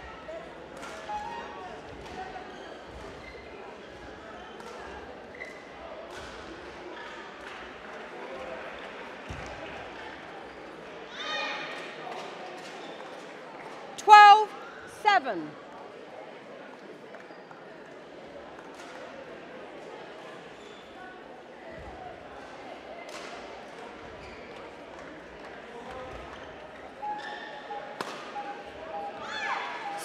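Badminton rally in a sports hall: sharp racket strikes on the shuttlecock and footfalls on the court mat, with two loud, short squeaks about fourteen seconds in.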